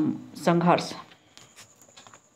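A woman's voice speaking Hindi for about the first second, trailing off. It is followed by a few faint clicks and scratches.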